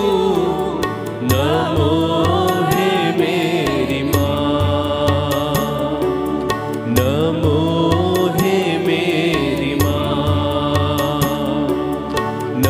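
Women's choir singing a devotional hymn into microphones, with instrumental accompaniment keeping a steady, repeating low beat.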